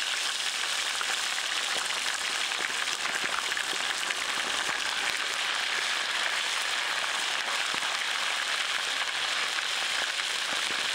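Chili-coated fish steaks deep-frying in hot oil in a wok: a steady, dense sizzle with fine crackles.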